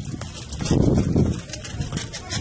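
Footsteps crunching on gravel as someone walks, with the rustle of a handheld camera being carried, loudest around the middle.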